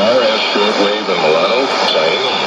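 Speech from a shortwave AM broadcast playing through a Sony ICF-2001D receiver's speaker, with a steady hiss of static under the voice.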